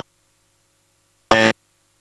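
A man's voice: a single short spoken syllable a little past halfway, with near silence around it.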